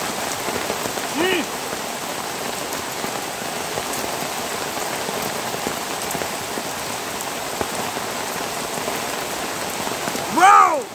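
Steady rain falling, an even hiss with scattered drop ticks. A short rising-and-falling vocal sound comes about a second in.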